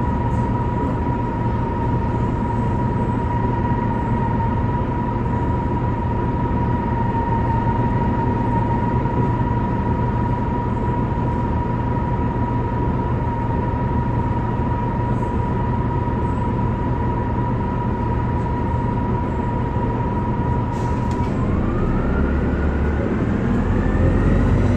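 2004 Orion VII CNG bus's Detroit Diesel Series 50G natural-gas engine and ZF Ecomat 2-HP592C automatic transmission running at a steady pitch with a constant whine over a low rumble. Near the end the whine climbs steadily in pitch as the engine revs up.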